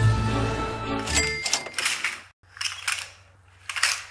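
Music that stops about a second and a half in, followed by several short bursts of clicking and clattering from a laser-cut plywood model printing press as its mechanism is worked: the paper tray sliding and the roller travelling.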